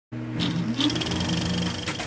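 Short musical logo sting: held tones with a rising swoop and a bright, high ringing note, fading out at the end.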